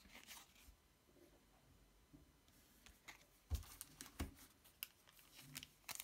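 Faint handling sounds of trading cards and a foil booster packet: quiet rustling, with a few light taps a little past halfway.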